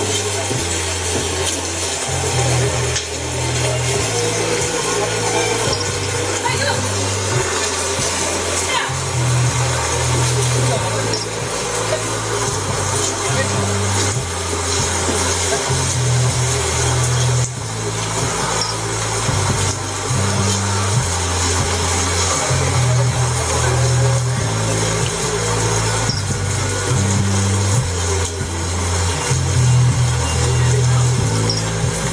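A vocal electronic song played loud through an aftermarket car stereo with kick-panel speakers and subwoofers, heard inside the car. Heavy bass notes shift every second or so under a female vocal.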